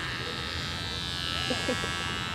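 Electric hair clippers buzzing steadily as they shave off a thick beard.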